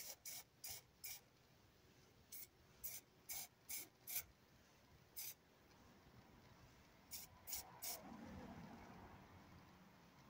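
Aerosol spray paint can fired in short bursts, about a dozen quick hisses in small groups, as camouflage spots are sprayed onto a canteen. A faint, lower rustling follows near the end.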